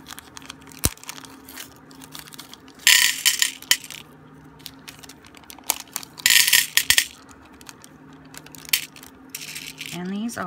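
Small clear plastic zip bag crinkling in two short bursts, about three seconds in and again just after six seconds, with scattered light clicks of glass beads knocking together and on the table.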